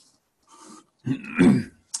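A man clearing his throat once, loudly, a little past halfway, after a brief pause.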